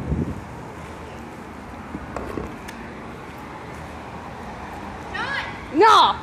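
A steady background hiss with a thump at the start. Near the end a person's voice calls out loudly and briefly, with a sliding pitch.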